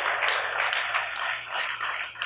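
Congregation clapping in a steady rhythm, about four to five claps a second, with a high metallic jingle on the beats; it dies away.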